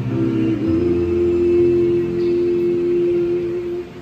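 Small choir and digital piano holding the closing chord of a Tagalog hymn: the chord shifts to its final form about half a second in, is sustained, and is released near the end.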